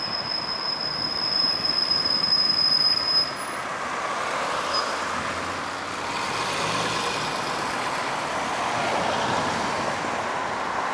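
A steady, high-pitched squeal of metal on metal lasts about the first three and a half seconds over the steady noise of traffic. After that the traffic noise carries on.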